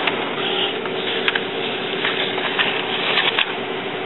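Epson WorkForce WF-2540 inkjet printer printing a nozzle check pattern to test the printhead. Its carriage and paper-feed mechanism run with a steady hum and whir, with a few light clicks.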